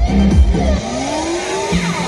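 Loud electronic dance music. About a second in, the beat drops out and a rising swoop sound effect plays, with falling swoops around it, like a revving car.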